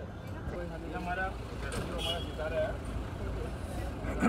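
People talking, with a steady low rumble of vehicle engines underneath.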